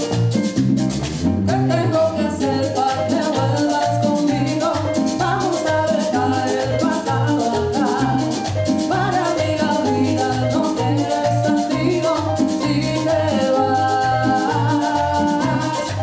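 Live Latin band playing a merengue on timbales, congas, electric bass and keyboard, with a fast, even percussion beat.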